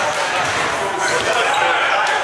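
Indoor basketball gym: people talking with a basketball bouncing on the court floor.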